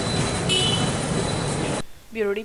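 Steady outdoor street din, mostly traffic noise, with a brief high tone about half a second in; it cuts off abruptly near the end.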